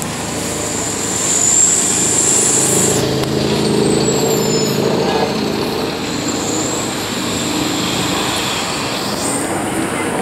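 Nova Bus LFSA articulated city bus pulling away and passing, its engine running under load, loudest a couple of seconds in. Over it a high-pitched whine rises, falls, then rises again as the bus moves off into traffic.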